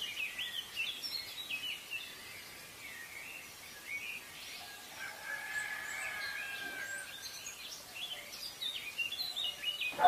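Birds chirping in quick, short calls throughout, with one longer held call of about two seconds in the middle.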